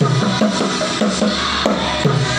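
Bongos struck by hand in a steady rhythm, with music playing along and a melody above the drums.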